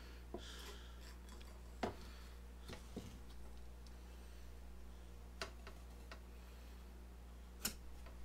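A handful of faint, short clicks and taps as a metal combination square and pencil are positioned and laid against a hardwood balsa strip on a cutting board, over a steady low hum.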